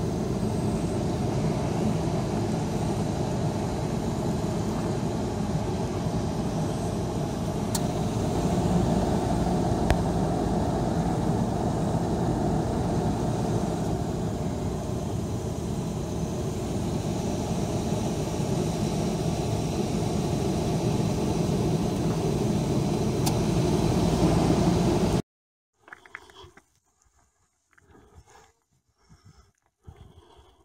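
Steady vehicle engine and road noise heard from inside a slowly moving car. It stops abruptly about 25 seconds in, leaving near quiet with a few faint short sounds.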